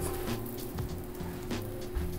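Crusted ahi tuna searing in butter and oil on a hot flat-top griddle: a steady sizzling hiss with faint crackles, under background music.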